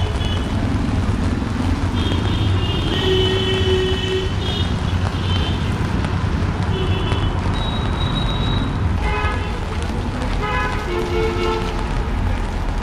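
Busy wet-street traffic with a steady rumble and tyre hiss, cut through by short vehicle horn toots again and again during the first two-thirds; voices are heard near the end.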